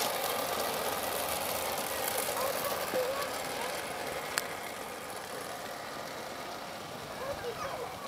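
A model train running along a garden-scale track, a steady mechanical rumble that fades after about four seconds, with faint distant voices in the background. A single sharp click comes about four and a half seconds in.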